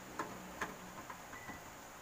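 Faint, irregular small clicks and taps, about five of them, as a plug-in circuit breaker is handled and fitted into a sub panel.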